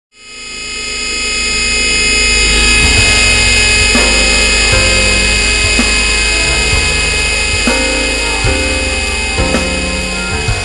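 Background music: an electronic intro fading in over the first two seconds, with sustained high tones over a bass line whose notes change every second or so.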